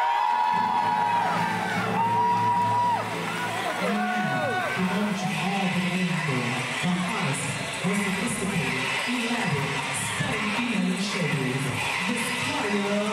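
An audience cheering and whooping over the opening of a song, with a low bass line coming in within the first second; the music and crowd noise then carry on together.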